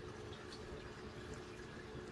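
Faint steady running-water sound and low hum of an aquarium's filter, with a few tiny clicks.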